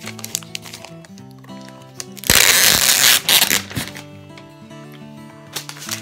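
Background music playing, with a loud rustle of thin plastic wrapping being peeled off a laptop about two seconds in, lasting about a second, and smaller crinkles near the end.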